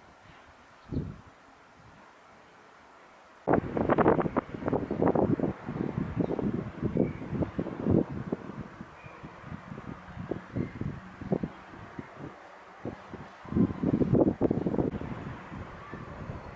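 Wind buffeting the camera's microphone in irregular gusts. It starts suddenly about three and a half seconds in, after a fairly quiet opening.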